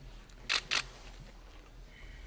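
Camera shutter clicks: two quick clicks a quarter of a second apart, about half a second in.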